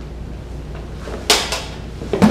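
Two sharp clacks of dueling lightsaber blades making contact, a little over a second in, the second about a quarter-second after the first and quieter: the parry and strike of a slow Sarlacc sweep.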